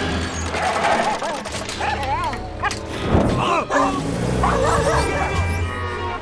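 Film soundtrack mix: music under a small dog's barks and yips, with a sudden loud hit about three seconds in.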